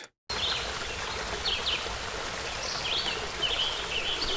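Babbling forest stream with birds singing: a steady wash of running water, with short high chirps repeating every second or so. It starts after a brief silence.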